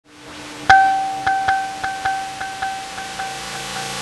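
DIY kalimba tine plucked: a bright metallic note, repeated about nine times on the same pitch and fading away, over a faint steady low tone.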